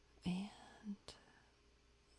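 A woman's soft spoken word, then a single faint computer mouse click about a second in, over quiet room tone.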